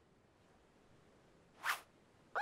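Cartoon sound effect: one short swish near the end, swelling and fading within about a quarter of a second, over faint background.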